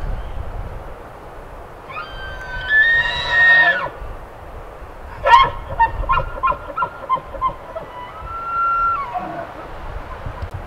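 Bull elk bugling, the rutting bull's call: a long high whistle, then a sharp start into a string of short chuckling grunts about three a second, then a second, shorter whistle that falls away at the end.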